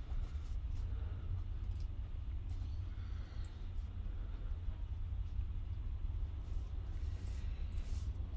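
Steady low background rumble, with faint rustles and light ticks of fabric and paper being handled as a needle and thread are worked through a fabric journal page.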